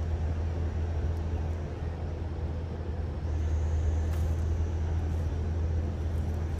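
Steady low hum with an even hiss over it; a faint, thin high tone joins about three seconds in.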